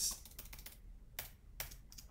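Computer keyboard keystrokes: a quick, uneven string of separate key clicks, about eight in two seconds, as a shortcut is pressed over and over to duplicate objects in Blender.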